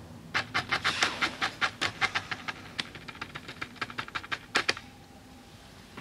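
Rapid, even panting, about five quick breaths a second, which stops about three-quarters of the way through.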